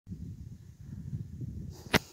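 Low, uneven rumble of wind buffeting a phone microphone, ended by a single sharp knock of handling noise near the end.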